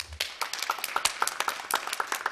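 Audience applauding: many hands clapping in a dense, irregular crackle.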